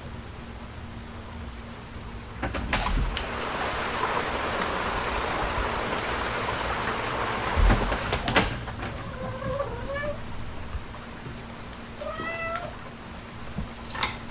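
Ambient sound effects for a night scene: a steady low hum, then a rush of noise that swells and fades over several seconds with a few sharp clicks. Near the end come two short squeaks that rise and fall in pitch, like a creak or a cat's meow.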